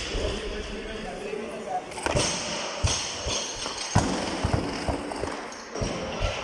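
Loaded barbells with Eleiko rubber bumper plates knocking and thudding in a weightlifting hall: several separate heavy impacts, the loudest about two and four seconds in, as bars are set down on jerk blocks and platforms.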